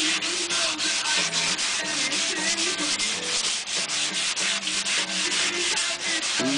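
Sandpaper rubbed by hand along a wooden guitar neck in quick back-and-forth strokes, a steady rhythmic rasp of about four or five strokes a second. The old lacquer is being scuffed back so that a fresh lacquer coat will bond.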